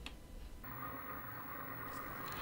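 Faint room tone with a low steady hum, a soft click just after the start, and a change in the background about two-thirds of a second in.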